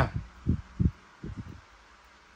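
Several short, dull, low thuds in the first second and a half, with quiet room tone after.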